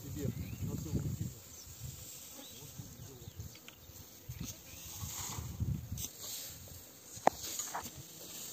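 Loose dry hay rustling as it is lifted and pitched onto a trailer with a pitchfork. Irregular low rumbles of wind buffet the microphone, insects chirp in the grass, and a couple of sharp knocks come near the end.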